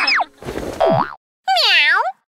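Cartoon sound effects for an intro card. About a second in there is a quick slide down and back up in pitch. After a short silence comes a rich cartoonish voiced call that dips in pitch and rises again.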